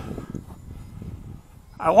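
Wind buffeting the microphone of a hat-mounted camera: an uneven low rumble, then a man starts to speak near the end.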